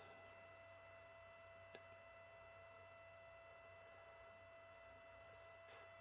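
Near silence: room tone carrying a faint, steady high whine, with one faint tick a little under two seconds in.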